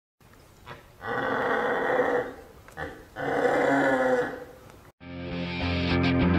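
Two long, growling animal roars, each lasting about a second, followed about five seconds in by rock music with electric guitar.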